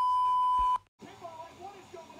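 Censor bleep: a steady pure beep about a second long, cutting in over a word just begun and stopping abruptly. It is followed by faint talking.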